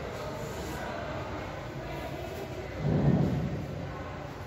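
Steady low rumbling background noise, with a brief, louder low swell about three seconds in.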